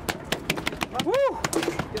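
Rapid knocking of a freshly landed yellowfin tuna beating its tail against the boat's deck, many knocks a second, with a man's short "woo" about a second in.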